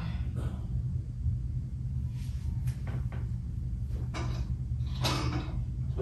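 A steady low hum with a few light clicks and knocks from handling things at a bathroom vanity, then two short rushing noises near the end.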